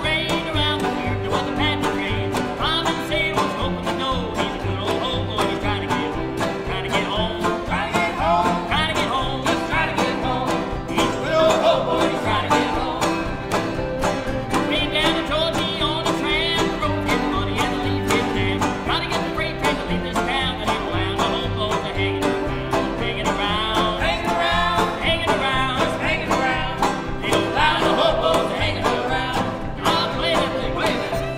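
Old-time string band of fiddle, banjo, acoustic guitar and cello playing an up-tempo tune together, with a steady bass pulse under the bowed fiddle melody.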